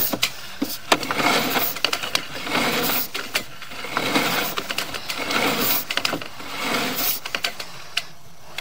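Sewer inspection camera's push cable being pulled back through the line and taken up on its reel, an irregular mechanical rattle with many sharp clicks.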